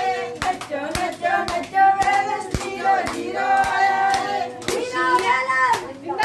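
Women singing Punjabi boliyan together in long held lines, with sharp hand claps about twice a second keeping time.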